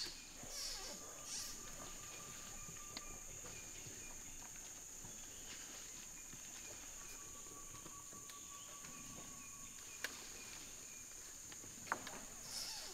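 Tropical forest ambience: a steady high-pitched insect drone, with a long even whistle-like tone twice and a few sharp clicks, the sharpest about ten seconds in and near the end.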